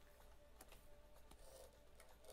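Near silence: faint room tone with a few soft clicks from a computer keyboard and mouse in use.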